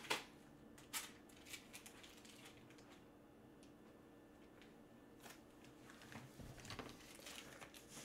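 Near silence: room tone with a faint steady hum and a few faint, scattered clicks and rustles, a little more frequent near the end.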